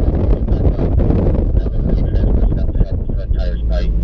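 Low rumble of engine, tyre and wind noise inside the cabin of a BMW being driven at speed around a race track. About three seconds in, the engine settles into a steady drone.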